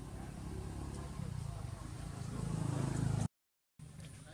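Low outdoor background rumble that swells over about three seconds, then cuts off abruptly into half a second of silence and resumes more quietly.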